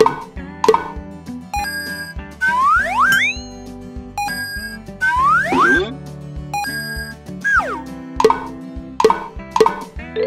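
Cheerful children's background music with cartoon sound effects: short plops near the start and again near the end, and slide-whistle-like glides that rise twice in the middle and then fall once.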